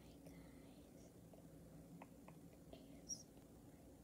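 Near silence: faint whispering with a few small clicks, and one brief high-pitched blip about three seconds in.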